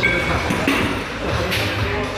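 Busy gym ambience: background music and indistinct voices, with a couple of short sharp knocks or clinks.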